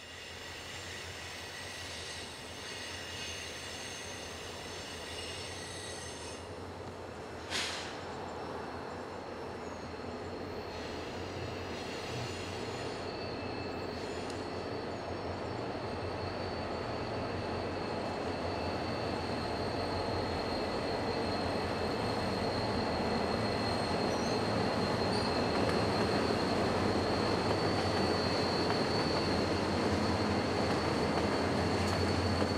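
Passenger train rolling slowly around a curve, its steel wheels squealing against the rail in steady high tones over a rumble that grows louder as the cars come past. One brief sharp sound stands out about seven seconds in.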